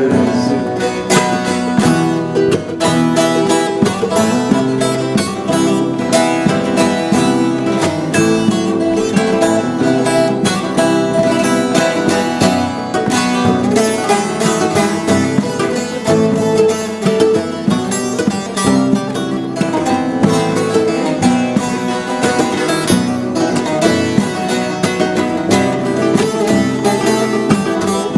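Instrumental Turkish folk music played by a small ensemble of bağlama, a smaller long-necked saz and classical guitar: busy, rapid plucking and strumming in a steady run of notes, with no singing.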